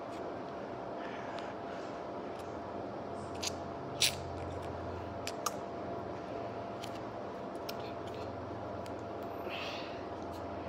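A few sharp clicks and crinkles of a small plastic jelly pouch being handled and opened, the loudest about four seconds in, over steady room noise with a faint hum.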